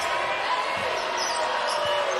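Basketball dribbled on a hardwood court, a few faint bounces under steady arena crowd noise.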